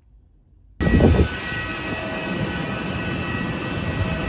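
Near silence, then just under a second in, jet airliner noise cuts in suddenly: a steady whine of several held tones over a rumble, loudest in a brief low rush as it begins.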